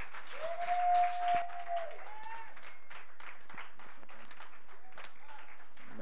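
Congregation applauding, with separate hand claps throughout. About half a second in, one voice calls out on a long held note lasting over a second, and there is a shorter rising call just after.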